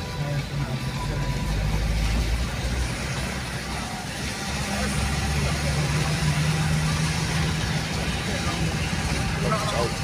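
A car's interior road noise while driving on a wet road: a steady low engine hum and tyre noise, heard from inside the cabin. A voice comes in near the end.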